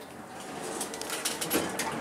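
Armor traction elevator coming to a stop at a floor and its doors starting to open. A run of clicks and rattles grows louder through the second half.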